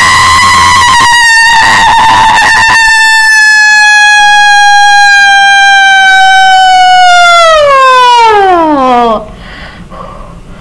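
One long, very loud, high-pitched scream from a voice, held near one pitch for about eight seconds, sagging slightly, then sliding steeply down and cutting off about nine seconds in.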